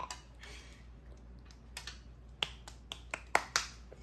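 A handful of sharp, irregular clicks in the second half, the snap and clack of hard plastic transforming-dinosaur toy parts being handled on a table.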